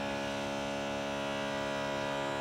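Steady, even electric motor hum from a power tool running without pause during renovation work in the building.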